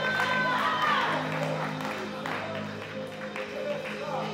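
Keyboard playing sustained low chords under a pause in a sermon, with two higher held notes that end within the first second; the sound slowly fades.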